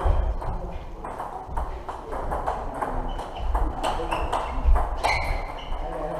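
Table tennis balls clicking off paddles and tables in quick, irregular succession as several rallies are played in the hall.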